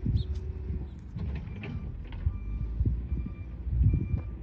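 Gusting wind buffeting in uneven low surges as a large cloth flag flaps and streams on a tall flagpole.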